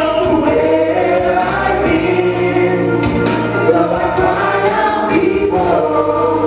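Live gospel worship singing: several voices sing through microphones over held low bass notes and scattered percussive hits.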